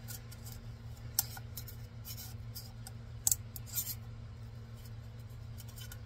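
Metal putty knife scraping and prying a cured resin 3D print off the printer's textured build plate: a few sharp clicks and scrapes, the loudest about a second in and just past three seconds, over a steady low hum.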